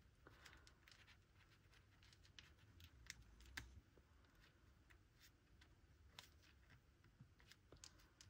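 Near silence, with faint scattered taps and rustles of paper and card being handled and pressed flat on a tabletop.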